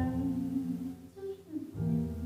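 Grand piano and plucked double bass playing a slow, soft instrumental passage of a jazz ballad, with the low bass notes sustained under piano chords.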